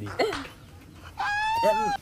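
A rooster crowing: one long, evenly pitched call starting just past halfway and running to the end, over a man's voice.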